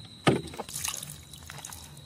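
Water sloshing and splashing as a steel tumbler is rinsed from a plastic jug and the water tossed out, with one loud splash about a quarter second in and lighter splattering just after.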